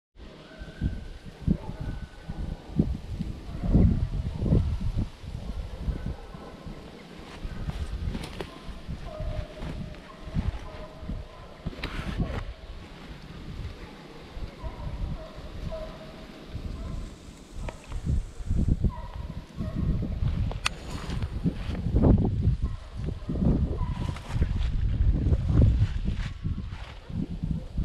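Wind gusting on the microphone, a rumbling buffeting that rises and falls throughout. Faint, short broken calls sound in the distance, and there are a few sharp clicks.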